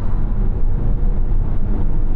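Rear-cabin noise of a Lexus LM people carrier accelerating: a steady low rumble of tyre and road noise. With the privacy divider raised, the engine's groan under acceleration is barely noticeable.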